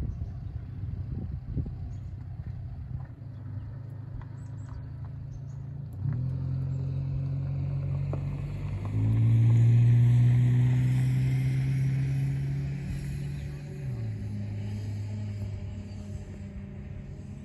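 Engine of a paragliding tow winch running under load as it tows the pilot off the ground. It sets in with a steady hum about six seconds in, rises sharply and is loudest from about nine seconds in, then eases back down near the end.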